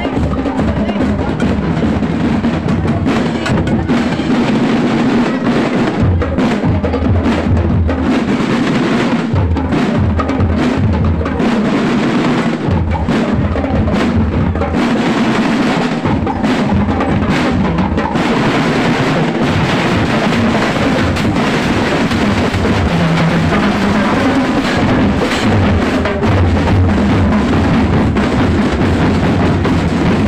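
Marching drum and lyre band playing: snare drums keeping a busy beat with repeated bass-drum hits, and metal bell lyres playing over them.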